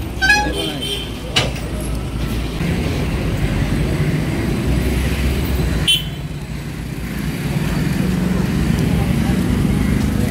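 Roadside traffic noise with a steady low engine rumble from idling vehicles, a short horn toot near the start, and two sharp clicks, one at about a second and a half and one at about six seconds.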